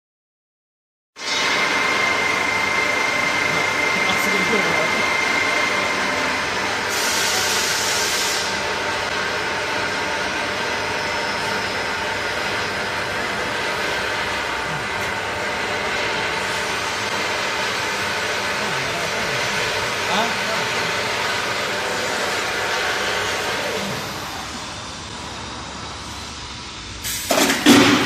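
Vacuum frying machine running: a steady mechanical hum with several steady whining tones, starting about a second in, with a short high hiss a few seconds later. Near the end the hum dips, then a loud burst of hiss with some knocks.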